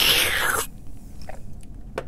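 A breathy rush of air from the mouth around a makeup brush handle held at the lips, dying away less than a second in, followed by a few faint small clicks.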